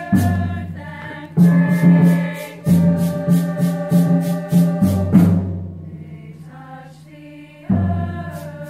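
Girls' choir singing over low drum strikes that come about every one to two seconds and ring away, with a quick, even ticking rhythm above. The music drops quieter about six seconds in before another strike near the end.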